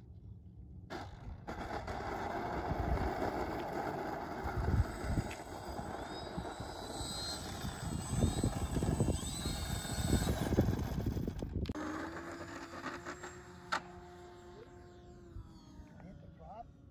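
Radio-controlled foam-board model plane's motor and propeller running up for takeoff, with a whine that rises and falls in pitch as it passes close, then a steadier, fainter hum from about twelve seconds in as it climbs away. Bursts of low rumble, the loudest parts, come around five and ten seconds in.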